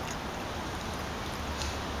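Steady background hiss with a low rumble, broken by a few faint, short high clicks.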